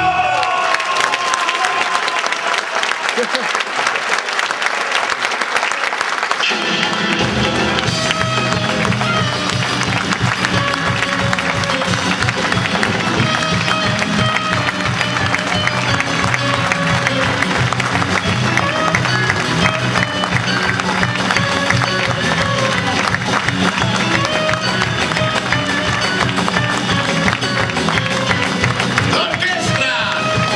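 Theatre audience applauding loudly as a live band's song ends. About seven seconds in, the band starts playing again with a steady beat under the continuing applause.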